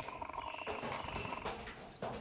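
Pigeon cooing: a purring call with a rapid flutter that stops about a second and a half in.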